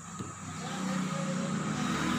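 A low, steady engine hum that grows gradually louder.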